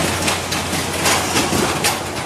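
Fairground kiddie ride running: a steady low machine hum with repeated rattling clatter over a noisy background.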